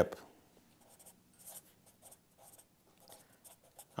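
Black felt-tip marker writing on a yellow legal pad: a series of short, faint scratching strokes as letters are drawn.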